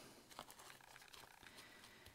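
Near silence, with faint scattered rustling of ribbon and lace being handled as a ribbon tie is done up.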